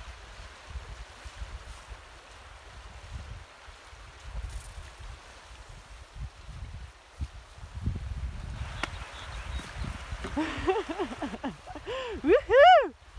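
Wind rumbling on the microphone over the rush and splash of a meltwater river being waded. Near the end a person's voice breaks in with short, rising-and-falling shouts of celebration.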